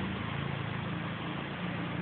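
Small gasoline engine running steadily at idle, with a low hum that wavers slightly in pitch.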